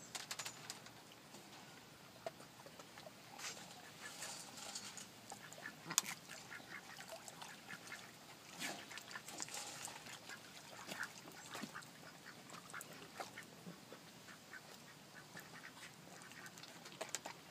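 White domestic ducks quacking quietly now and then as they paddle. There is one sharp click about six seconds in.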